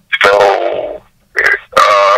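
A man's voice over a conference-call phone line: a drawn-out hesitation sound sliding down in pitch for most of a second, then, after a short pause, the start of more speech.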